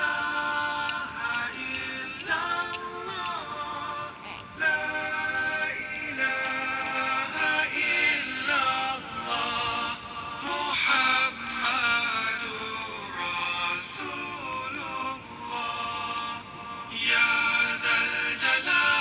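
Zikir, Islamic devotional chanting, sung in a drawn-out melodic voice with held and gliding notes.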